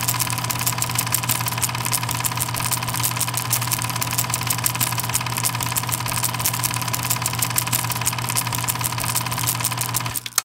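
A steady mechanical running sound: a constant low hum with fast, even clicking or rattling over it, cutting off suddenly at the very end.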